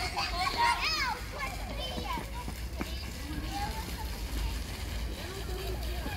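Young children playing and calling out in high voices, loudest in the first second or so and then fainter. Underneath is a steady low city rumble and a faint splashing from a park fountain.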